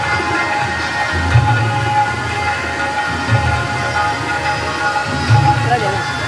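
Music with steady held tones and a low beat about every two seconds.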